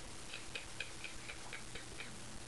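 Faint, even ticking, about four ticks a second, in a quiet room.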